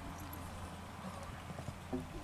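Hoofbeats of a young dapple grey horse cantering on a sand arena, soft thuds over a low steady rumble.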